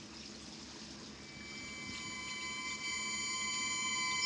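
Faint hiss, then a held cluster of steady high tones that fades in from about a second in and grows slowly louder.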